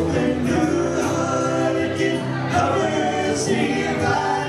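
Live folk-rock band playing: acoustic and electric guitars under several male voices singing together in harmony.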